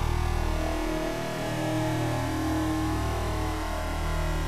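A steady, noisy drone with a low hum underneath, part of an effects-distorted logo soundtrack.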